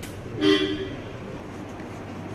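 A vehicle horn gives one short toot of about half a second, over steady background noise.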